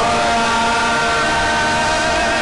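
Worship music holding one long steady chord, several sustained notes with no beat.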